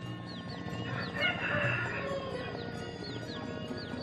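A rooster crowing once, about a second in, over background music with a steady low pulse and repeated short falling notes.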